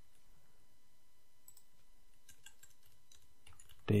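Faint computer keyboard typing: a few scattered, light key clicks over a steady low background hiss.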